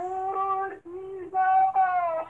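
A high-pitched singing voice holding long, steady notes of a slow melody, with a brief break between phrases.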